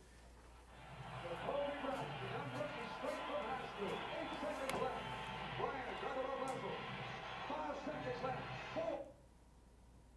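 Audio of a 1990s TV basketball broadcast played over the room's loudspeakers: a commentator talking over arena crowd noise, thin and muffled, cutting off abruptly about nine seconds in.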